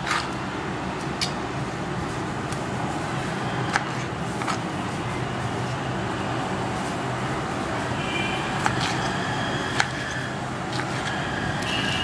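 Kitchen knife cutting pineapple on a wooden chopping board: scattered sharp taps of the blade striking the board every second or two. Underneath is a steady background rumble.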